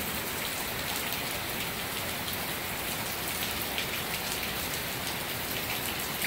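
Steady rain falling on the water of a swimming pool, a dense, even hiss of many small drops.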